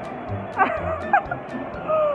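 Background music with steady low notes, under a few short, high-pitched squeals that glide up and down, like a whimpering yip.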